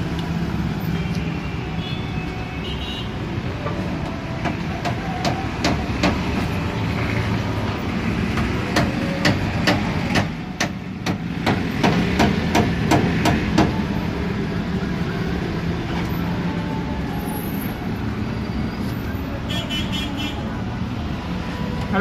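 A run of sharp, irregular knocks and taps on wood, a dozen or so strikes over about ten seconds, as plywood nest-box boards in a pigeon loft are handled and set in place. A steady background rumble, like distant traffic, runs under them.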